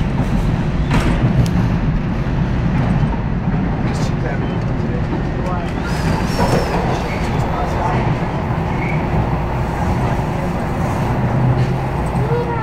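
TTC H6 subway car running at speed through a tunnel: a loud, steady rumble of wheels on rails and running gear, with a few sharp clicks.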